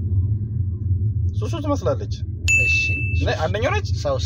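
Steady low rumble of a car cabin, with a single bright ding about two and a half seconds in that holds one tone for under a second.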